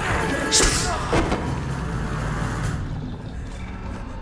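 Film soundtrack: a low, sustained score bed with two sharp impact hits within the first second and a half, then a lower rumble that thins out toward the end.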